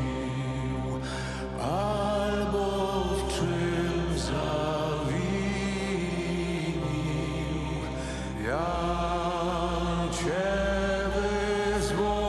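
A group of voices slowly chanting a Passion hymn in long held notes. Each new phrase swoops upward into its note, over a steady low drone.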